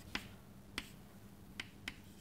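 Chalk tapping against a blackboard while writing: four short, sharp clicks spaced out over two seconds, fairly faint.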